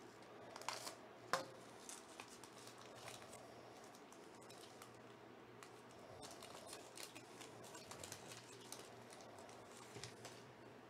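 Faint crinkling and rustling of a foil trading-card pack wrapper handled and torn open by hand, with a sharp click about a second in and light crackles again later on.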